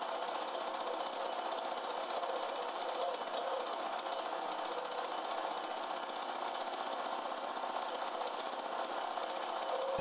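A handheld power tool running continuously against a log, giving a steady, rapid buzzing rattle with no pauses.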